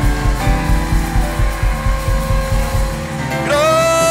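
Live worship band music: a steady bass and drum beat under sustained keyboard chords. About three seconds in the beat drops out and a singer comes in with one long held note.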